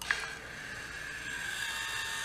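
Bulldog Valve Robot's electric gear motor switching on with a click and turning the brass ball valve's handle, a steady motor whine that grows slightly louder. It is driving the water shut-off valve closed as a first test after pairing.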